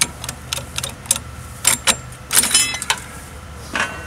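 Metal bars and rails of a graveside casket-lowering device being handled and pulled apart: a run of sharp clanks and clinks, a few of them ringing, over a steady low hum.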